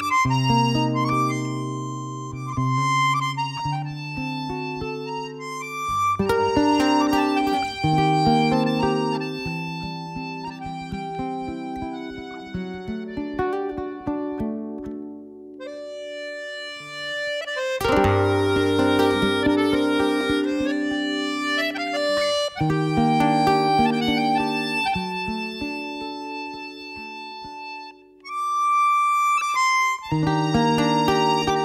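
Button accordion playing a lively instrumental tune over acoustic guitar accompaniment, with a short break near the end before the playing starts again.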